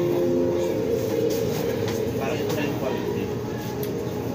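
Busy restaurant room noise: indistinct voices over a steady background hum, with a few held tones running through it.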